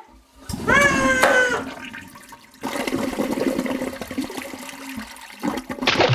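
A toilet flushing, water rushing through the drain pipe for a few seconds. It is preceded about a second in by a short, loud, high-pitched cry.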